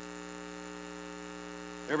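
Steady electrical mains hum in the microphone and sound-system chain: a constant low buzz made of several even tones, unchanging in level.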